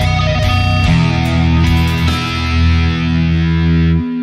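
Distorted Ibanez electric guitar playing a fast picked lead lick of rapid triplet notes high on the neck. About a second in it settles into held, ringing notes, and it cuts off at the end.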